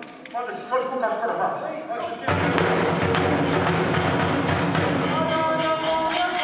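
A voice speaking for about two seconds, then a kagura ensemble starts up: taiko drum and rapid hand-cymbal strikes in a steady rhythm, with a sustained melody line joining about five seconds in.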